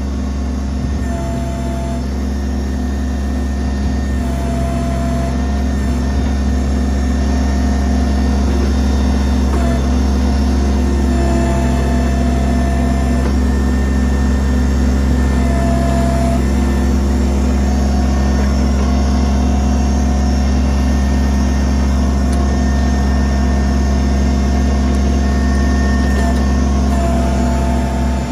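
Kubota BX23S tractor-backhoe's three-cylinder diesel engine running steadily while the backhoe is worked around a tree stump. A higher whine comes and goes several times over the engine note as the hydraulics are worked.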